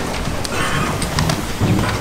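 Audience applause thinned out to a few scattered claps over a murmuring crowd.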